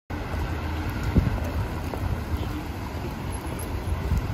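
Street traffic on a wet road: cars passing with tyre hiss and a steady low rumble, with wind on the microphone.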